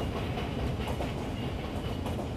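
Train running on its rails, heard from on board: a steady rumble with faint clacks of the wheels over the track.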